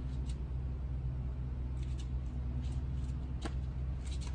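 A steady low hum with a few faint, sharp clicks spread through it.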